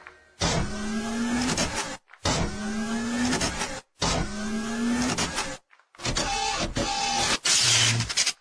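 Robot-style sound effects from a popping dance mix: a rising, motor-like mechanical whine played three times, each about a second and a half long and cut off sharply into silence, then a shorter buzzing phrase near the end.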